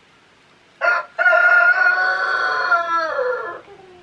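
A rooster crowing once, starting about a second in: a short first note, then a long held call that drops in pitch as it ends.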